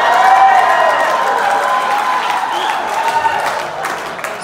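Audience applauding and cheering, with some whoops over the clapping. It peaks about half a second in, then slowly dies down near the end.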